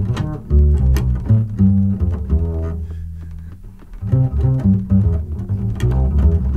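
Jazz piano trio recording with a plucked double bass walking prominently in the low end, piano chords above it and occasional cymbal strikes. The playing thins out and gets quieter about three seconds in, then picks up again a second later.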